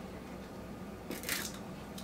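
A brief rattling rustle, about a second in, from a plastic seasoning shaker jar being handled while raw meat is seasoned, over faint kitchen room tone.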